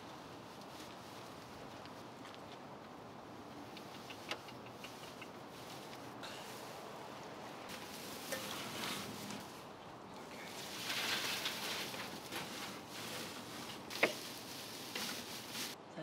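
Dry hay rustling and crackling as it is handled and packed around a wooden rabbit nest box, loudest about eleven seconds in, with a couple of sharp knocks.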